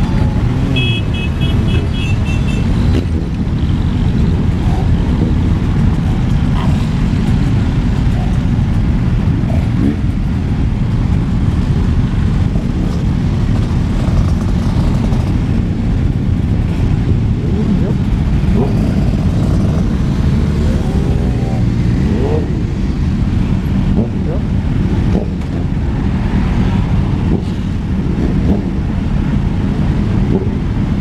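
Motorcycle engines running at low speed, a Kawasaki close by and other bikes around it, heard as a steady low rumble. A short run of high beeps comes about a second in.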